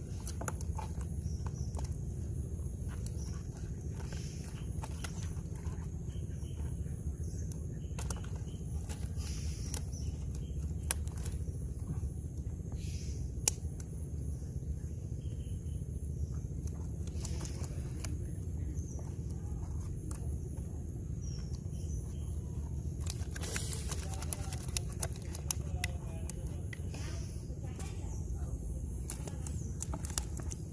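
Small clicks and rustles of a nylon gill net and live fish being handled over a basin of water, with a denser burst of rustling about three-quarters of the way through, over a steady low rumble and a steady high insect drone.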